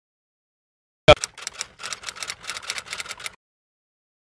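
Edited-in sound effect: a sharp hit about a second in, then a quick run of sharp clicks that stops abruptly about two seconds later.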